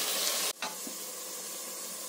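Chopped tomatoes, onion and green peas sizzling as they fry in a pot, stirred with a slotted spatula. The sizzle cuts off abruptly about half a second in, leaving only a faint steady hiss.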